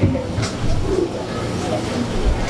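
Indistinct, low voices murmuring in a hall, with a few short clicks and knocks.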